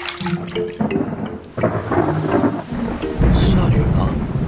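Soft background music, then rain sets in about a second and a half in, and a deep rumble of thunder breaks near the end as the loudest sound.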